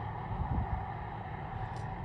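Steady low rumble and hiss of outdoor background noise.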